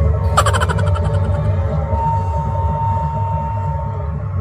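Gamelan music playing, with a bright struck metallic note about a third of a second in that rings on, and a held tone from about halfway.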